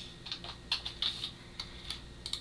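Typing on a computer keyboard: a handful of separate keystrokes at an uneven pace.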